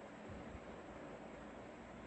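Faint, steady hiss of background noise, with no distinct handling sounds standing out.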